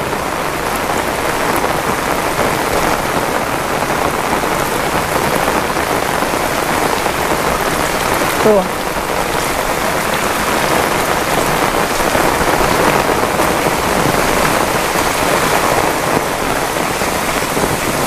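Heavy rain falling in a steady, loud downpour.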